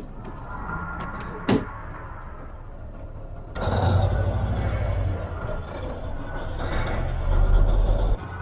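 Heavy truck engine running in a movie chase soundtrack: a quieter low hum with a single click, then from about halfway through a loud deep rumble that swells near the end.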